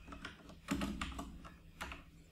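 Computer keyboard typing: a few scattered keystrokes.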